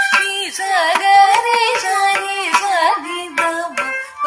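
Carnatic music in raga Reethigowla, Adi tala: a melody line ornamented with wide gamaka pitch glides and shakes, over sharp percussion strokes.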